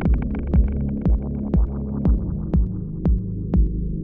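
Dub techno: a steady four-on-the-floor kick drum, about two beats a second, under a sustained droning chord. The hi-hats drop out and the upper sounds grow steadily more muffled as a filter closes.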